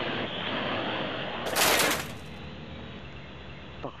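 Small Parrot AR.Drone-type quadcopter with its foam hull hovering low, its rotors giving a steady whirring hiss. Just past halfway comes a loud burst of rushing noise lasting most of a second, after which the whirring is fainter.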